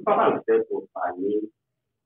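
A man's voice speaking for about a second and a half, then stopping.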